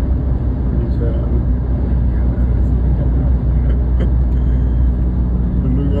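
Steady low road and engine rumble inside a car's cabin cruising at highway speed.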